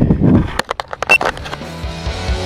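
Wind rumbling on a glove-mounted camera's microphone and a quick run of sharp clicks, then rock music starting about one and a half seconds in.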